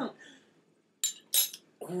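A cough trails off, then about a second in come two short, sharp clinks, like a metal spoon knocking against a dish or the table.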